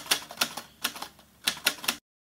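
Typewriter sound effect: a quick, uneven run of sharp key clacks, about eight in two seconds.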